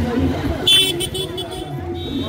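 Outdoor crowd chatter by a road with vehicles moving, and a short high-pitched vehicle horn toot just under a second in.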